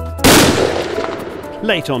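A single rifle shot fired at a wild boar about a quarter of a second in, the loudest sound, its report dying away over the next second. Background music plays under it.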